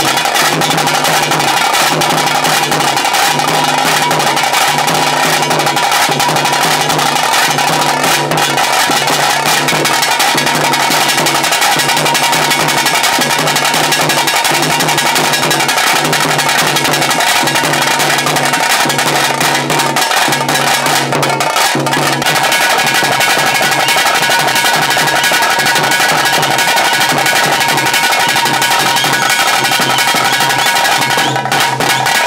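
Tase drum band playing the tiger-dance rhythm: a dense, continuous drum roll with a steady lower beat pulsing about once a second.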